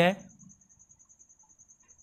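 Faint cricket chirping: a steady high-pitched trill of rapid, even pulses.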